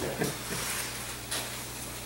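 Faint rubbing of a rag wiped over the face of a glass fiber reinforced concrete (GFRC) panel to take off the wax layer, with a couple of brief scuffs, over a steady low hum.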